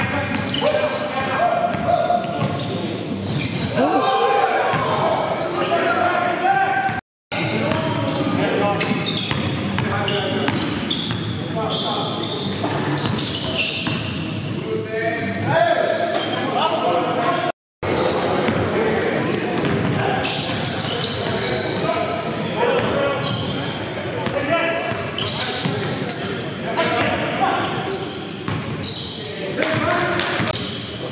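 Live basketball game in a gym: a basketball bouncing on the court floor, mixed with players' indistinct shouts and voices, all echoing in the hall. The sound drops out twice, briefly.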